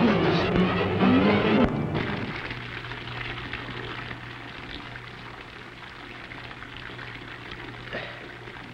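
Dramatic film score for a little under two seconds, cut off abruptly. A bathtub tap then runs water steadily into the tub over a low steady hum.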